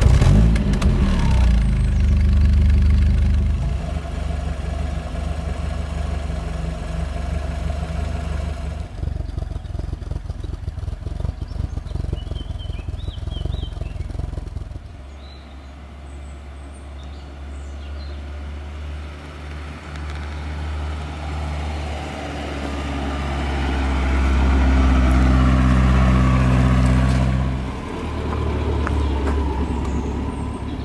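Rover P6 2000's four-cylinder engine running at the exhaust tailpipe, just started and idling steadily. From about halfway the car is driving by on the road, its engine note swelling as it comes near, loudest a few seconds before the end, then dropping away.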